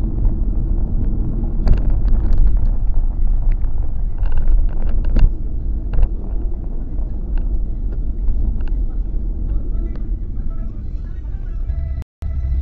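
Steady low rumble of road and engine noise inside a Kia Carens cabin while driving on a highway, with scattered sharp clicks and knocks.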